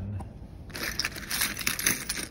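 A big pile of metal car keys on rings, with plastic key tags, jingling and clattering as a hand rummages through them; the rattling grows busy a little under a second in.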